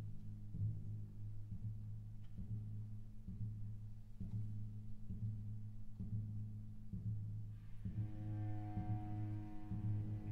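Soundtrack music: a deep, low drone with a slow pulse about once a second. Near the end, higher sustained tones come in over it.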